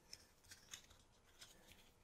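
Near silence with a few faint, short clicks of a plastic case and a small camera circuit board being handled.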